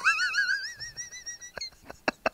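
A man's high-pitched laugh: one warbling, wavering cry that climbs steadily in pitch, followed near the end by a few short, sharp puffs of breath.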